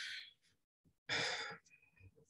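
A man's breathing in a pause in his speech: one breath trailing off just after the start, then a second, shorter breath about a second in.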